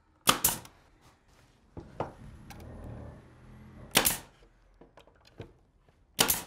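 Pneumatic nailer firing into wood: two quick shots just after the start and another about four seconds in.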